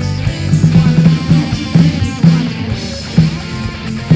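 Live rock band playing worship music: electric guitars, bass and drum kit, with a steady driving beat.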